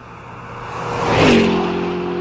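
A whooshing swell of noise that grows steadily louder for about a second. It ends in a falling pitch glide that settles into steady held tones as the track's intro music starts.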